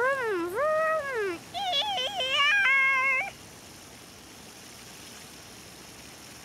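A young child's voice making pretend car-engine noises: a long note gliding up and down in pitch, then a run of wavering, warbling notes that stop about three seconds in, leaving only faint background.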